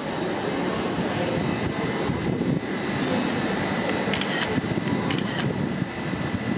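Steady mechanical hum and rumble of a GWR Class 802 train, with a faint high whine held throughout. A few light clicks come about four and five seconds in.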